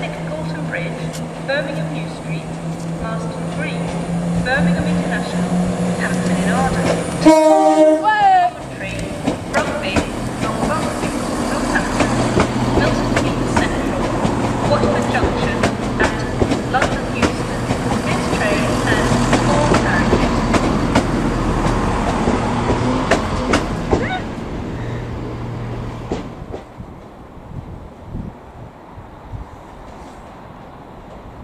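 Passenger trains at a station. A Class 170 Turbostar diesel unit runs with a steady engine hum. About seven seconds in comes a brief, loud train horn blast. Then another train moves through with a steady hum and wheel clatter, fading away over the last few seconds.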